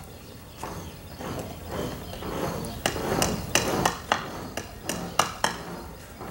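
Rendering-cement mixing work: a scraping, rustling noise, then a run of sharp, irregular knocks and clacks in the second half, typical of hand tools and buckets striking the mixing tubs.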